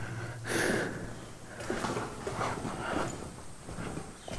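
A person breathing close to the microphone: a stronger breath about half a second in, then several fainter breaths.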